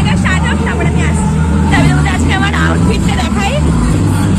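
Chatter of several women's voices in a busy hall, with high excited voices calling out from about two seconds in, over a steady low rumble.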